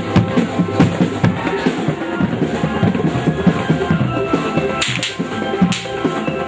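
Drum-led traditional ensemble music accompanying a jaranan horse dance, with a quick steady drum beat under sustained melodic tones. Two short hissing crashes sound near the end.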